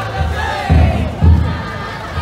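Taiko drum inside a futon daiko festival float, struck in a steady repeating rhythm with three deep beats, under the crowd of bearers chanting and shouting.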